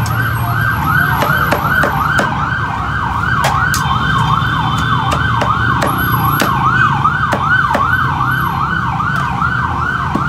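A siren wailing in a fast yelp, its pitch rising and falling nearly three times a second, over irregular knocks of a cleaver chopping roast chicken on a wooden chopping block.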